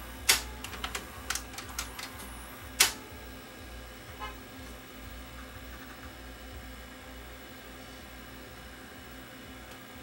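VCR tape mechanism clicking as play engages, several sharp clicks over the first three seconds, then the running deck's steady low hum.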